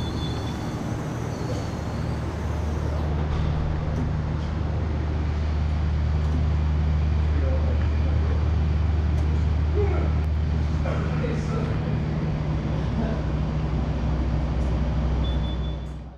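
Octane FB35 electric forklift running as it is driven, a steady low hum from its electric motors that grows louder about three seconds in and holds until near the end.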